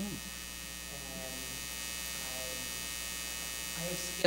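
Steady electrical mains hum with a constant hiss in the microphone's audio, and a couple of faint voice sounds in the background.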